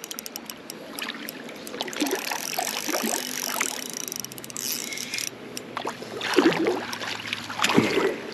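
Water splashing and sloshing as a landed salmon trout thrashes in a landing net at the water's edge, with two louder splashes near the end as the net is lifted out.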